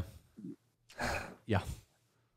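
A man's audible breath out, then a quiet spoken "yeah".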